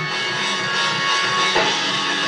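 Live gospel music with drum-kit backing, a sharp drum hit about one and a half seconds in.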